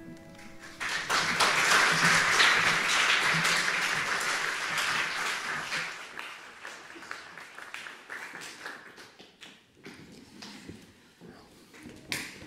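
The piano's final chord dies away and the audience applauds: the clapping comes in about a second in, stays full for several seconds, then thins to scattered claps and fades out.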